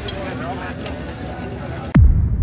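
Indistinct chatter of a group of people over steady street noise, then a sudden deep hit right at the end.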